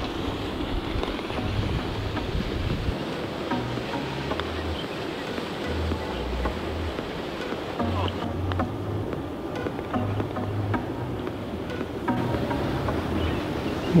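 Background music with a low bass line, over steady wind noise on the microphone.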